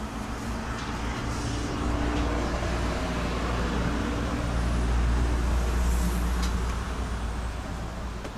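Street traffic: a motor vehicle's engine rumble swells over a few seconds and then fades as it passes.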